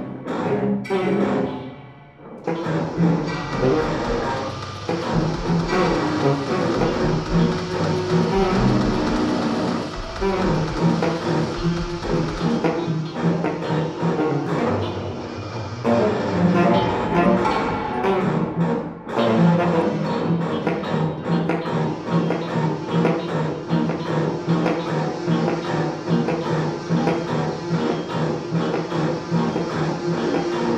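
Contemporary chamber music for tenor saxophone, electric guitar, cello and electronics, played live in a dense, continuous texture. A deep low drone sits under the first half, and the texture thins briefly about two seconds in and again near nineteen seconds.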